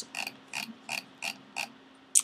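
A row of about five short, light clicks, evenly spaced at about three a second, from the computer as the code view is scrolled down.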